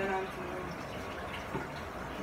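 Spice containers handled in a kitchen cabinet: a sharp click at the start and a lighter knock about one and a half seconds in, over steady background noise.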